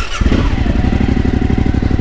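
Suzuki V-Strom's V-twin engine running steadily at low speed as the loaded bike rides slowly along a street, starting a fraction of a second in.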